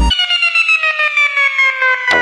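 Electronic dance music breakdown with no bass or drums: a sustained synthesizer tone glides slowly and steadily down in pitch, pulsing several times a second.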